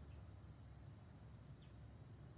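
Near silence: a steady low hum of room tone, with three faint, very short high chirps spread across it.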